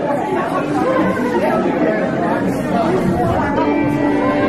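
Audience chatter, many voices talking at once in a large hall. Near the end, two fiddles begin to play with steady held notes.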